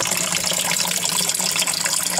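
Pumped water pouring in a steady stream from a barbed pipe fitting into the water in a plastic drum, splashing continuously.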